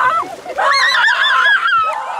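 Excited high-pitched shrieks and squeals from several voices: a burst at the start, then a run of quick rising-and-falling squeals from about half a second in.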